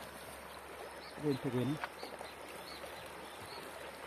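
Swollen river in flood, its muddy water rushing with a steady noise. About a second in, a short voice sound rises above the water and is the loudest thing heard.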